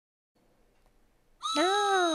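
A voice calling out a long, drawn-out "Now!", starting about one and a half seconds in, its pitch rising briefly and then sliding slowly down.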